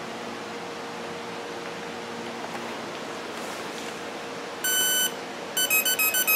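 Brushless outrunner motor beeping the power-up tones of its electronic speed controller as power is connected: a faint steady hum, then one long beep about two-thirds through, followed near the end by a quick run of short beeps at changing pitch.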